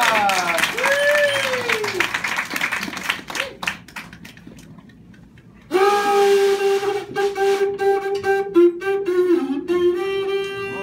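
Sliding, arching tones that fade out over the first couple of seconds, then after a short lull a small hand-held wind instrument starts a slow melody about six seconds in, holding one steady note with brief dips in pitch.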